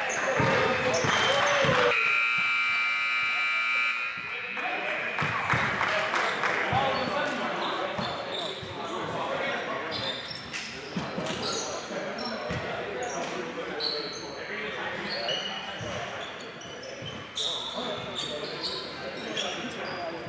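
A scoreboard buzzer sounds for about two seconds, starting about two seconds in, ending the period. Voices and basketball bounces follow, echoing around the gym.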